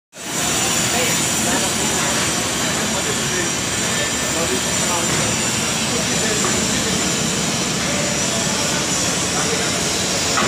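Indistinct voices of people in the background over a steady rushing noise.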